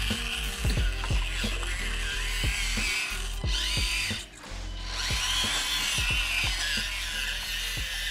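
High wavering whine of an Axial SCX24 micro crawler's small electric motor and drivetrain, its pitch rising and falling with the throttle as it crawls downhill, under background music with a regular beat. Both dip briefly a little after the middle.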